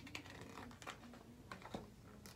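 Faint rustles and soft clicks of a hardcover picture book's paper page being turned by hand, a few separate small ticks.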